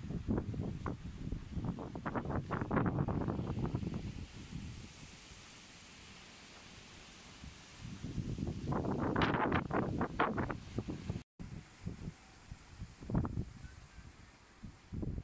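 Wind gusting across the microphone in two bouts, the first in the opening seconds and the second from about eight to eleven seconds in, with calmer air between and a few short puffs near the end.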